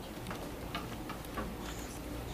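Quiet room hush with a steady low hum and a few faint, irregular clicks and rustles from the seated string players readying their instruments.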